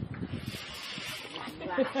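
Hand saw rasping through a tree branch, with a few knocks early on. A voice says a short word near the end.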